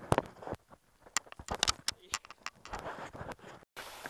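Rapid, irregular clicks, knocks and rattles close to the microphone, the sound of the camera being handled over river stones. The sound cuts off abruptly near the end.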